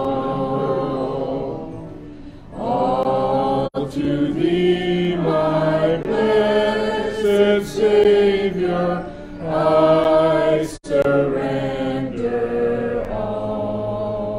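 A man and a woman singing a hymn together, in slow, long-held notes with short breaks between phrases.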